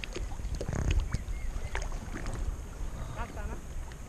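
Water sloshing and splashing around a small boat being pushed across a shallow river, with a few short sharp splashes. Wind rumbles on the microphone.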